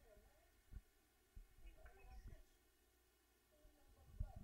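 Near silence: room tone with a faint, indistinct voice and two soft low thuds in the first second and a half.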